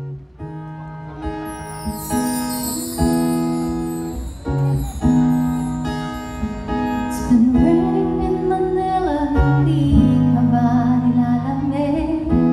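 Acoustic guitar strumming the chord intro of a song, the chords changing every second or so. A wordless vocal line joins over the guitar about halfway through.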